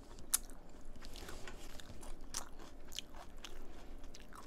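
Someone chewing leaf-wrapped rice (ssambap) with crisp lettuce, a string of small crunches and clicks, the sharpest about a third of a second in. Light handling sounds of the spoon and leaves as a wrap is made mix in.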